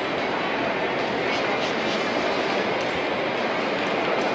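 Steady noise of a large indoor arena with indistinct voices in the background.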